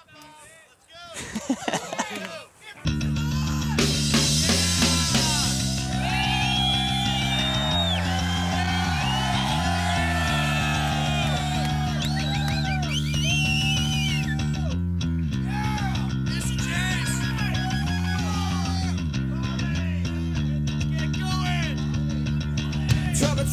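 Rock music with guitar and bass comes in about three seconds in. A higher melody bends in pitch above low held notes that change every second or two, and the level stays steady from there on.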